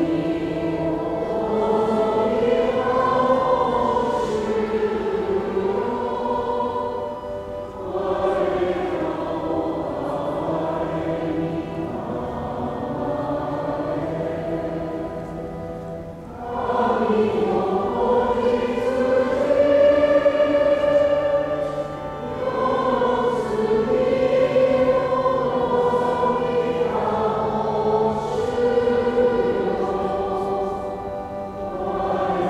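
A choir singing a slow hymn in long sustained phrases, with short breaks between phrases about 8 and 16 seconds in.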